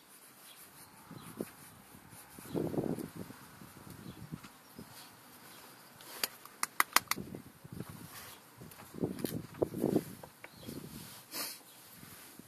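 Light sharp taps and knocks: a quick run of about five taps about six seconds in and a few more around nine to ten seconds, with softer handling thuds between.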